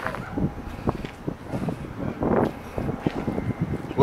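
Wind gusting on the microphone in uneven swells, with a few faint knocks.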